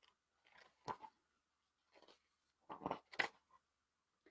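A paper page of a picture book being handled and turned, heard as a few short, faint rustles and crinkles.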